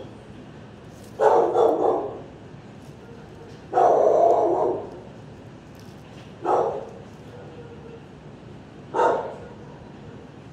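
Dog barking in an animal-shelter kennel: four bursts of barking about two and a half seconds apart, the first two longer than the last two.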